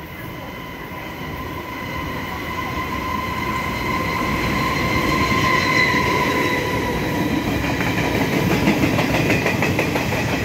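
The Taiwan Railway Ming Ri Hao locomotive-hauled passenger train approaching and passing close by, growing louder over the first half. Its rumble carries a steady high whine, and rapid clicking of the wheels over the rail joints comes in near the end as the coaches go by.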